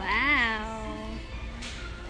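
A short meow-like vocal call near the start, rising then falling in pitch over about half a second.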